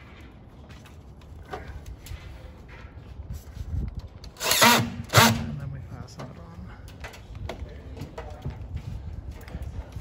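Cordless drill/driver running in two short bursts of about half a second each, about four and a half seconds in, driving screws into the soffit. Light knocks and handling sounds come before and after.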